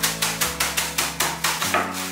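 Wooden rolling pin striking and crushing cornflakes in a plastic bag on a wooden board: a quick run of knocks, about five or six a second, with the flakes crunching.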